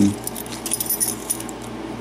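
Keys on a ring jingling, with a scatter of light metallic clicks, as a key is worked in a Lockwood seven-pin tumbler lock cylinder that turns smoothly with no binding.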